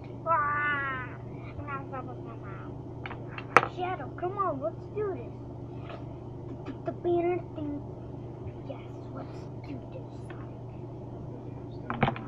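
A child's voice making wordless, high-pitched sliding sound effects: one long wavering squeal near the start, then shorter vocal noises in the middle. A sharp click comes about three and a half seconds in.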